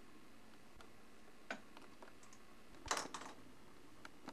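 A few sharp clicks over a faint steady hiss, with a short louder clatter of clicks about three seconds in.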